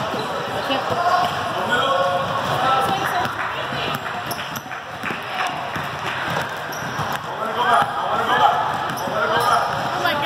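Basketball game sounds: a ball bouncing on the court floor now and then, one sharper knock about seven seconds in, under steady unintelligible chatter and calls from spectators and players.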